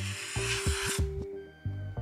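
A dry-erase marker scribbling across cardboard to cross out a line, a rough scratching for about the first second. Background music with steady bass notes plays underneath.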